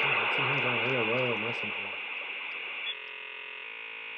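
Dial-up modem connection noise: a loud static hiss, with a low wavering tone in the first second and a half and steady electronic tones from about three seconds in.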